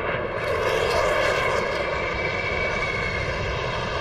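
Military jet aircraft engine noise: a steady rush with a faint high whine through the middle.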